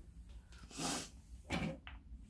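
A person's breathing: two short breaths through the nose, about a second apart, the second carrying a faint trace of voice.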